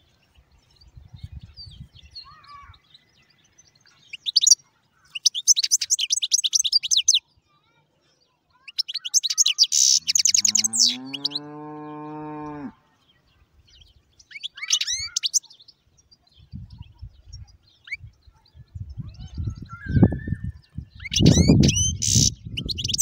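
European goldfinch singing in bursts of rapid, high twittering notes. Around ten seconds in, a long low animal call rising in pitch at its start lasts about two seconds, and low rumbling noise comes in near the end.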